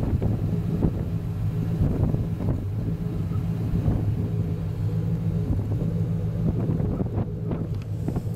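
Steady low hum of an engine running, with wind noise on the microphone.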